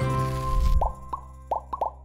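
Intro jingle of a children's show: a held chord over a low bass note, then a quick run of about five short pop sound effects that each rise in pitch, while the music rings out.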